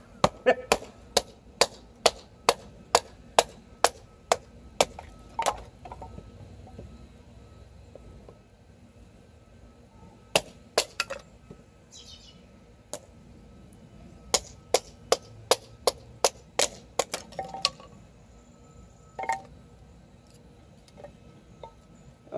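A wooden baton knocking on the spine of a PKS Kephart XL knife with a 1095 carbon-steel blade, driving it down through an upright stick to split it (batoning). It comes as a run of about fifteen sharp knocks, roughly three a second, then a pause with a couple of single knocks, then another run of about ten.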